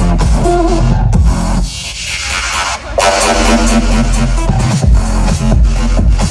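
Loud electronic dance music from a live DJ set over a festival sound system, with heavy bass. About a second and a half in the bass drops out under a rising sweep, and the full beat comes back in at about three seconds: a build and drop.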